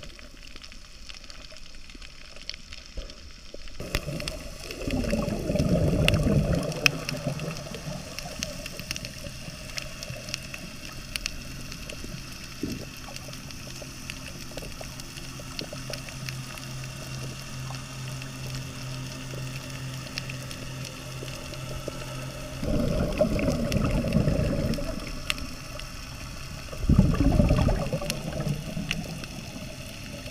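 Underwater sound picked up by a camera submerged while snorkeling: a muffled watery wash with three louder bubbling, gurgling rushes, about 5 seconds in, around 23 seconds and near 27 seconds. Between them a steady low hum runs.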